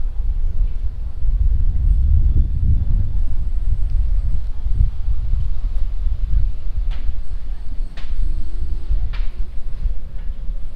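Wind buffeting the camera's microphone outdoors, a loud, fluttering low rumble, with a few faint ticks near the end.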